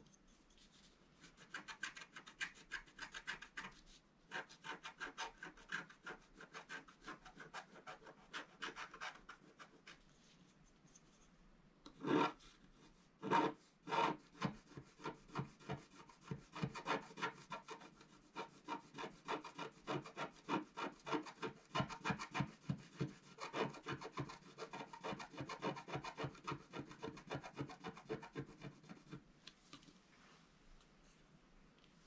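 Wooden scratch stylus scraping the black coating off a scratch-art card in quick, short, repeated strokes. The scraping pauses for about two seconds midway, then resumes with a few louder strokes.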